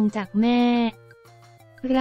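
A woman's narrating voice in Thai ends a phrase by drawing out the syllable "mae" on one flat pitch for about half a second. A pause of about a second follows, with only faint steady background music, before the voice starts again near the end.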